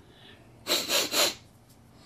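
A person sniffing three times in quick succession at the neck of an open bottle, smelling the drink.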